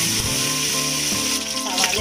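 Green chillies sizzling as they fry in hot coconut oil in an aluminium pot: a steady frying hiss, under background music.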